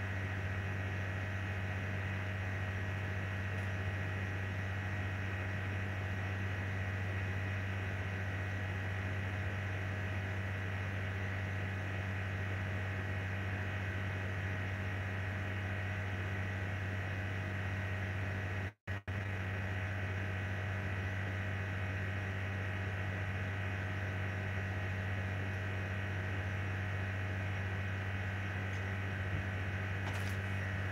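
A steady low hum with no speech, cutting out very briefly about nineteen seconds in.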